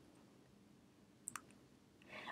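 Near silence: room tone, with two faint, brief clicks close together a little past halfway.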